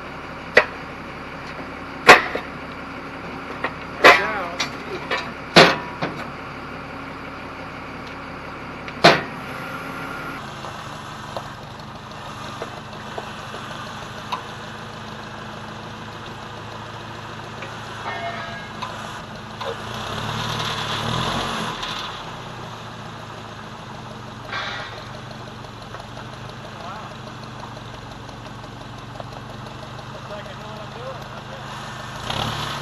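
A long steel bar striking a Caterpillar 637 scraper's steel wheel rim, seven sharp ringing metal clanks in the first nine seconds. After that an engine idles steadily, swelling briefly about twenty seconds in.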